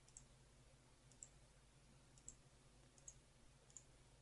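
Faint computer mouse clicks, five of them spaced roughly a second apart, each placing an anchor point of a polygonal lasso selection, over near-silent room tone.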